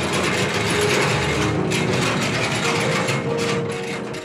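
Large black steel compound gate being pushed open by hand, rattling and clattering steadily on its track.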